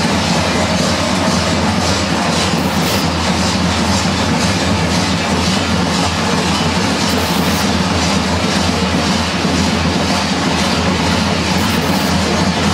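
Many large kukeri bells worn on the dancers' belts clanging together in a continuous dense metallic clatter, rung as they sway and jump in the ritual dance to drive out evil spirits.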